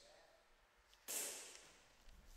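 Near silence, broken a little over a second in by one short, soft breath.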